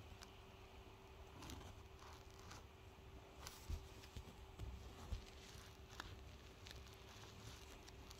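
Near silence: faint room tone with a steady low hum and a few scattered soft clicks and taps, the loudest about a third and two thirds of the way through.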